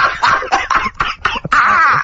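A man's breathy laughter in a run of short gasps, ending in a louder, pitched stretch near the end.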